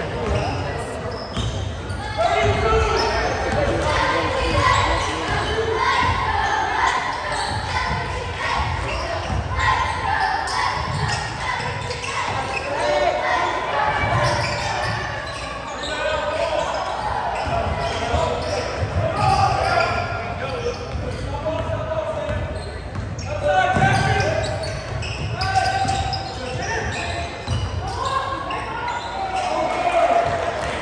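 Basketball dribbled and bouncing on a hardwood gym floor during play, under constant voices and shouts from spectators and players, in a reverberant gymnasium.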